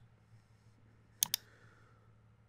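A computer mouse double-clicking: two quick sharp clicks about a tenth of a second apart, a little over a second in, over a faint low hum.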